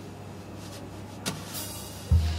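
Coffee-shop ambience bed: a low steady hum with a faint background haze and a few light clicks, the sharpest one about a second and a quarter in.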